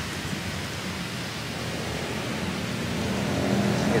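Steady outdoor background noise, an even rushing hiss that grows slightly louder toward the end.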